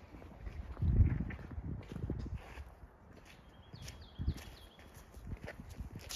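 Footsteps of a person walking with a handheld camera: irregular low thuds, the loudest about a second in.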